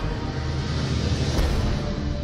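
Film score music with a dense noisy rush of battle sound effects, and a heavy low thump about one and a half seconds in.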